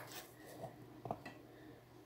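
Faint rustling of hair being handled and parted with the fingers, with a brief swish at the start and two soft knocks about half a second and a second in.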